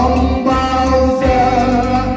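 Live singing through a microphone, held melodic notes over electronic keyboard accompaniment with a bass line and a steady beat, played loud through PA speakers.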